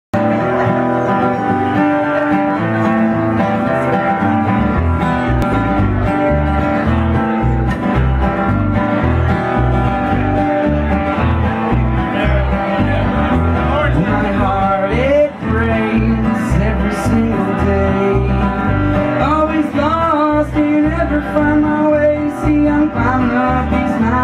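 Acoustic guitar playing a country/bluegrass-style instrumental intro, joined by a plucked upright bass about four or five seconds in; a higher melody line with bending notes comes in over the second half.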